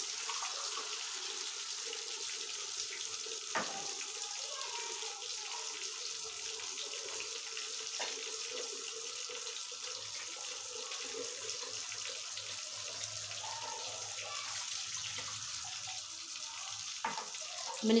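Steady hiss of water freshly added to a hot pan of fried beef koftas and masala, with a few faint clicks.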